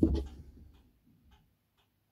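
Paintbrush working oil paint onto a canvas: a louder knock at the very start, then a few soft, irregular taps of the brush against the canvas.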